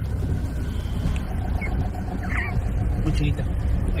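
Steady low rumble of road and engine noise heard inside the cab of a pickup truck driving slowly.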